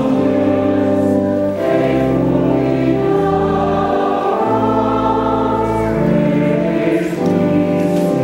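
Church choir singing a sung blessing with organ accompaniment: slow, held chords over sustained bass notes, the harmony changing about every second and a half.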